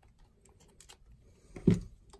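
Light clicks of a camera lens being twisted off a Nikon camera body's bayonet mount, then a louder knock about a second and a half in as the lens is handled.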